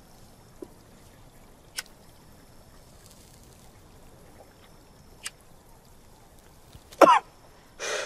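A few faint clicks as a cigarette is lit, then a person coughing twice near the end, choking on the smoke of the first drag.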